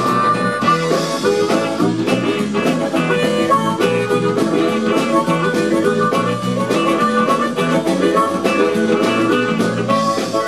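Live blues band playing an instrumental 12-bar blues in E: harmonica lead over electric guitar, keyboard, bass and drums, with a steady beat.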